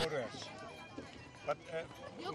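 Faint background chatter of people talking, with a brief louder voice about halfway through.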